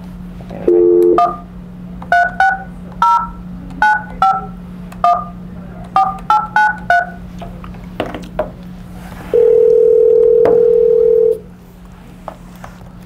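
A phone call placed over a conference speakerphone: a short burst of dial tone, then about eleven touch-tone (DTMF) key beeps as a number is dialled, and about nine seconds in a single two-second ringback tone as the line rings.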